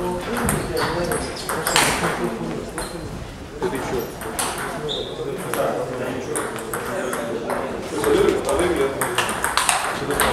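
Table tennis ball being struck by rubber paddles and bouncing on the table in a rally: a string of sharp, irregular clicks, with voices talking in the hall.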